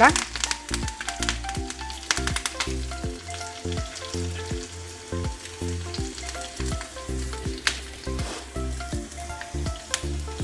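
Shallots, dried red chillies and curry leaves sizzling in hot oil in a frying pan. There is a dense burst of sharp crackles as the fresh curry leaves spit in the oil, thinning out over the first few seconds to a steadier sizzle with scattered pops.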